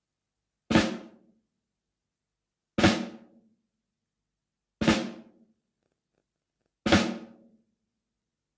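Four flams played on a snare drum, about two seconds apart, with accents alternating between right and left hands. Each is a light grace note falling just ahead of an accented stroke, so close together that they sound almost like one hit, and each rings briefly.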